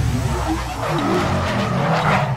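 Sound-effect car burnout: tyres screeching over a low engine rumble.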